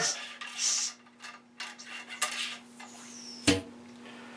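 A patched ramrod worked back and forth in the bore of a muzzleloading rifle during cleaning: short scrapes and rubs of the patch in the barrel and light metal clicks, with a sharper knock about three and a half seconds in.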